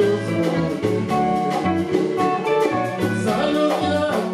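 A live band playing with a steady beat: electric guitar, bass, drum kit and congas under male voices singing.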